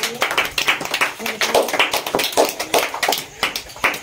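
A small group clapping: scattered, irregular hand claps kept up throughout, with faint voices underneath.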